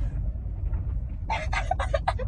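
Steady low rumble of a car cabin on the move, and from about halfway through a woman's short, high-pitched burst of laughter.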